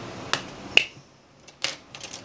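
A few sharp small clicks from an iPhone 5 and the suction cup on its screen being handled as the phone is about to be opened; the loudest click comes a little under a second in, and a quick pair near the end.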